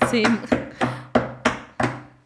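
A quick run of sharp knocks, about three a second, each dying away briefly, stopping near the end. They mimic the stairs banging in the ghost story.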